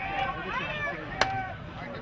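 Unintelligible shouting from players and onlookers around an outdoor soccer field, with a single sharp knock a little past halfway.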